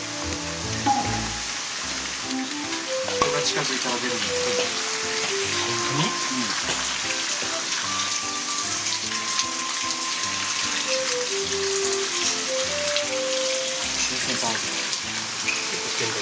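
Water running and splashing into a stone purification basin, a steady hiss with fine crackle, under background music of held melodic notes.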